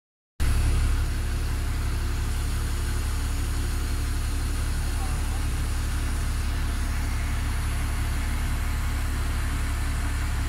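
A steady low mechanical drone that runs without change.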